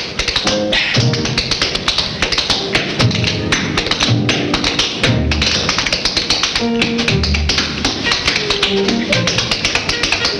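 Tap dancing: quick, dense runs of tap-shoe clicks, several a second, over band music accompanying the dancer.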